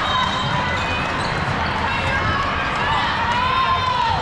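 Busy volleyball hall din: many voices of players and spectators from the surrounding courts, with the thuds of volleyballs being hit and bouncing, in a large echoing hall.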